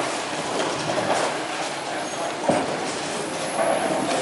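Bowling alley din: balls rolling and pins clattering across the lanes. A sharp thud about two and a half seconds in is a bowling ball landing on the lane at release, and it then rolls on.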